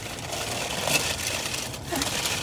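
Paper wrapping and a plastic shopping bag crinkling and rustling as wrapped items are handled, with an irregular crackle that swells briefly about a second in.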